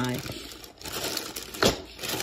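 A plastic zip-top bag of small toy pieces crinkling as it is handled and lifted out of a plastic storage drawer, with one sharp click near the end.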